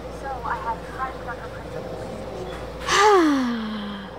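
A few faint, short voice-like chirps, then about three seconds in a loud gasping groan from a voice that slides steadily down in pitch.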